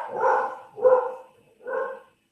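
Dogs barking in a quick run, about one bark every two-thirds of a second, hot on the chase of a squirrel or something.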